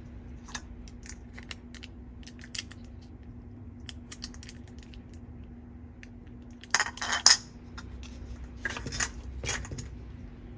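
Small hard-plastic toy kitchen pieces handled by hand: light clicks and taps of plastic against a plastic toy bowl, with a louder crackle of clear protective film being peeled off a toy piece about seven seconds in, and another cluster of handling noise near the end.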